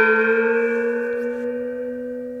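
A single struck bell tone ringing on with several steady overtones and slowly fading.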